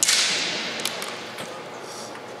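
Kendo shinai (bamboo swords) clashing: one loud, sharp crack at the start that trails off over about a second, then a few lighter clacks about a second in.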